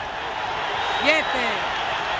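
A man's voice counting "siete" in Spanish over the steady din of an arena crowd, during a knockdown count.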